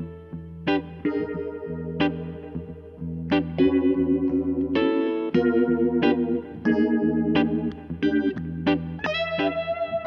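1978 Gretsch 7680 Atkins Super Axe electric guitar played through a Fender Vibroverb amp: chords and short phrases picked about once a second, with steady low notes held underneath.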